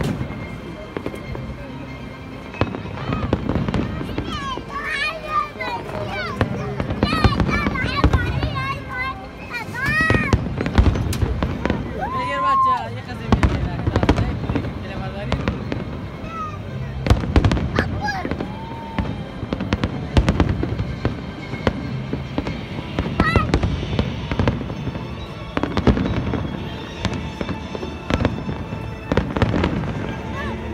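Aerial fireworks bursting overhead: a long run of bangs, one after another, over a continuous low rumble, with a crowd's voices mixed in.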